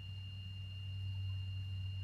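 Room tone: a steady low hum with a faint, thin high-pitched whine above it.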